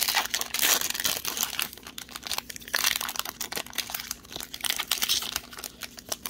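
Plastic blister packaging and a foil trading-card pack crinkling and crackling as they are twisted and pulled open by hand, with the loudest crackles near the start and again about three seconds in.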